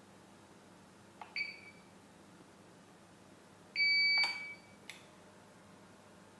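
APC UPS's internal beeper sounding as the unit is switched on with its power button: a click and a short beep, then about two and a half seconds later a louder beep held for about half a second, followed by a couple of faint clicks.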